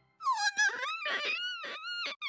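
A high-pitched girl's voice crying: a long drawn-out wail that breaks into short sobs.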